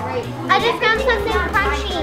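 Children's voices chattering over one another, with background music underneath.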